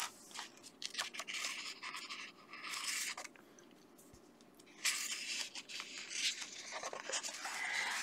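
Thin paper pages of a colouring book being turned and handled, rustling and sliding with small clicks. There are two bouts of rustling, with a short lull a little before the middle.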